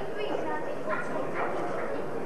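Spectators' voices in a hall: steady chatter with several short, loud shouts.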